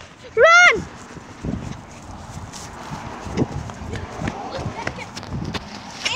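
A child's brief high shout, then several seconds of running footsteps: irregular soft thumps and scuffing, with the rustle of a phone carried at a run.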